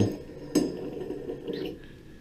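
A sharp metal clink with a brief high ring as a chrome shower handle is slid off its valve stem, followed about a second later by a fainter knock.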